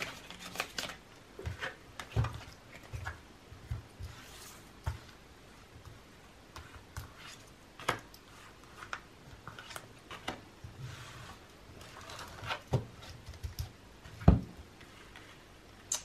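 A deck of round cardboard oracle cards being shuffled in the hands, then slid and spread across a burlap-covered table: scattered light clicks, flicks and soft swishes. A sharper knock comes near the end.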